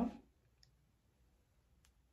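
Small bottle of hair oil handled over an open palm: a faint tick about half a second in, then a single sharp click near the end, against a quiet room.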